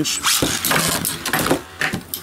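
A Beyblade launched by ripcord launcher into a clear plastic stadium, then spinning metal tops whirring and knocking against each other and the stadium wall with a few sharp clicks.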